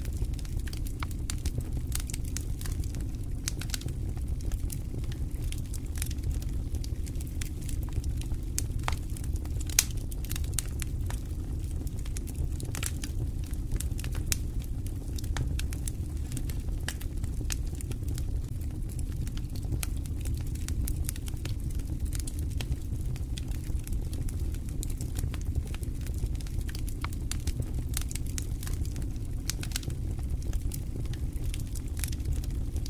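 A wooden cooking stick stirring and scraping dry maize flour in a metal sufuria, heard as scattered sharp clicks and crackles over a steady low rumble, with one louder knock about ten seconds in.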